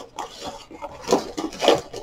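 Opened cardboard box being handled and tipped, with a few short rustles and knocks from the box and its contents.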